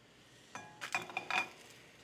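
Metal clinks of a nonstick frying pan being shaken on the cast-iron grate of a gas burner to loosen the crepe, with a metal slotted spatula touching the pan. A cluster of short ringing clinks starts about half a second in and lasts about a second.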